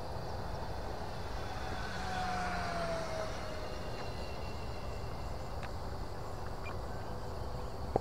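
Electric motor and propeller of an FMS P-39 Airacobra RC plane at full throttle, heard as a faint whine that falls in pitch as the plane passes, about two to three seconds in.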